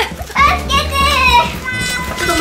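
Excited children's voices, high-pitched, over light background music.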